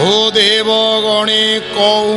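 Men's voices singing a devotional chant in long, held notes that slide from one pitch to the next, with a harmonium playing along.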